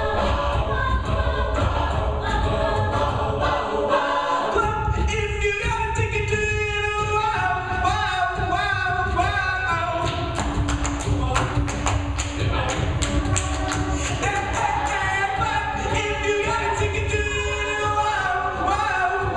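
A co-ed a cappella group singing live: a solo voice over sung backing harmonies and a deep vocal bass line, with rhythmic percussive clicks joining in from about ten seconds in.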